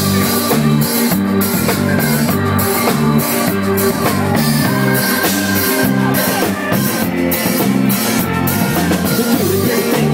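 Live rock band playing loud and steady: drum kit, electric bass and guitar.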